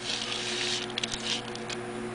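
Small cut pieces of foil dryer vent tubing rustling and clicking as a hand moves and places them: a soft rustle for the first second, then a few light clicks. A steady low hum runs underneath.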